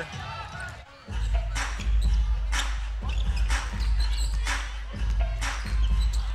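Gym PA music with heavy bass and a beat about once a second, coming in about a second in, under the sounds of a live basketball game with the ball bouncing on the hardwood court.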